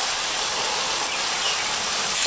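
Minced-meat lula kebabs sizzling in a hot ridged grill pan, the rendered tail fat spitting as a steady, even hiss.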